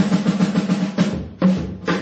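Jazz drum kit break between tenor saxophone phrases: a rapid snare roll over the first second, then a few separate accented hits.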